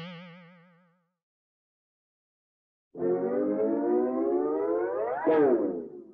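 Comic sound effects in a TV comedy: a wobbling boing that fades out within the first second, then a pause of silence, then a long rising whistle-like tone that climbs for about two seconds, peaks and drops away quickly.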